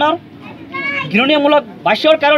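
Speech only: a man talking into reporters' microphones, in short phrases with brief pauses.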